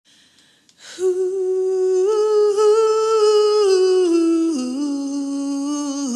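A woman's solo voice, unaccompanied, humming a slow wordless melody from about a second in: a few long held notes that step down in pitch in the second half.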